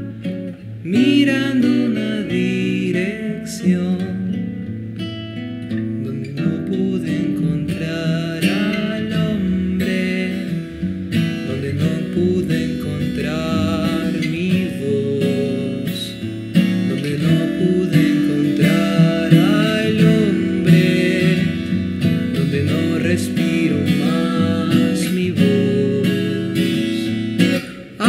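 Acoustic folk song played on plucked and strummed acoustic guitars.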